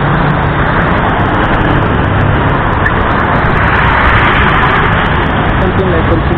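City street traffic: cars and buses running along the road in a continuous rumble, swelling as a vehicle passes close about two-thirds of the way through.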